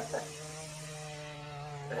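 A steady low machine hum, a motor or engine running evenly with several steady higher tones above the drone.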